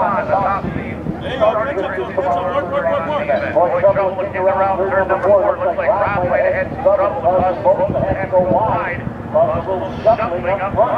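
Talking throughout, over the steady drone of racing hydroplane engines out on the water.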